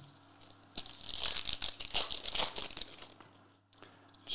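Foil wrapper of a 2022-23 Panini Revolution basketball card pack being torn open and crinkled. A crackling rustle starts about a second in and lasts around two seconds.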